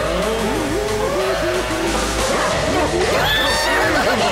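Cartoon soundtrack: background music under a quick run of short squeaky pitch glides, bending up and down, with higher sweeping glides about three seconds in.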